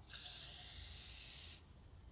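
Water running from a tap: a steady hiss for about a second and a half that cuts off abruptly.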